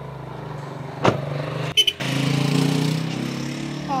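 A car engine running steadily at idle after its loose battery terminal was tightened, with a sharp click about a second in and a short knock just before two seconds, after which the running sound is louder.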